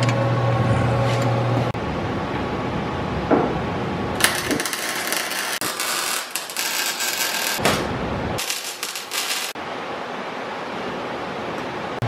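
Welding on the truck's underside: two spells of steady crackle and hiss, the first starting about four seconds in and lasting some three and a half seconds, the second about a second long a little later. The welder himself calls the results trash welds.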